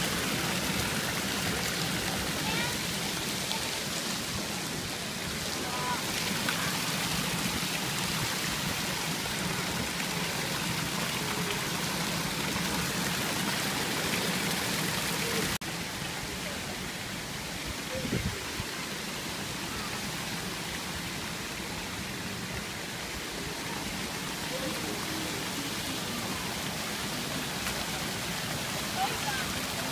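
Water-play structure pouring and spraying water into a shallow splash pool: a steady rush of falling and churning water, a little quieter from about halfway through.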